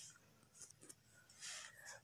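Near silence with a faint, short scratch of a pen tip on a paper textbook page about one and a half seconds in, with a couple of faint ticks before it.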